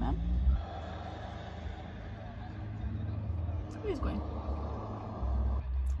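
A motor vehicle going by, heard from inside a car: a rushing noise that comes in about half a second in and fades away near the end, over a steady low rumble.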